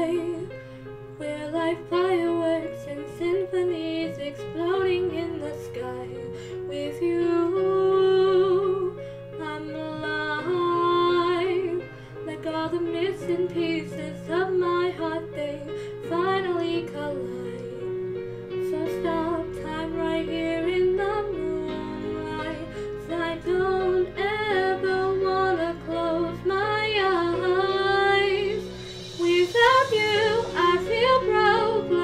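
A woman singing a slow ballad along with a karaoke backing track, her voice moving through the melody line by line over sustained instrumental chords.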